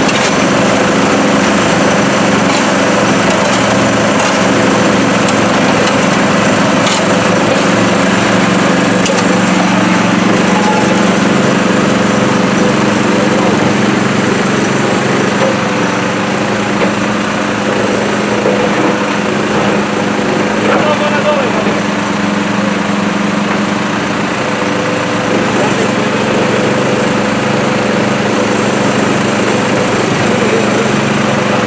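A small engine-driven pump running steadily at the trench, over the idling diesel engine of an FB200.2 backhoe loader, with a few light knocks of tools.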